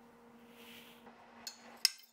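A low, faint steady hum, then two sharp clinks near the end as metal forks strike a ceramic plate.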